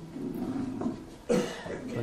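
A person coughing once, briefly, about one and a half seconds in.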